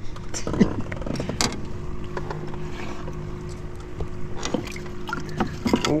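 A small electric motor on the boat humming steadily, a low even drone through the middle, with a few sharp clicks and knocks.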